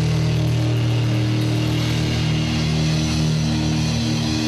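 Live rock band's amplified electric guitars and bass holding one sustained, ringing low chord, with no drumbeat under it.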